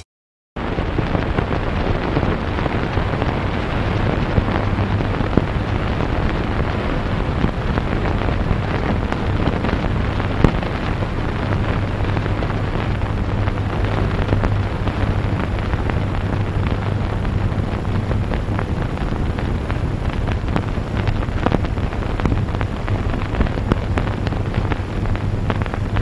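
Steady rushing noise with scattered crackles and a low hum and no music, typical of an old film soundtrack's hiss under the opening credits.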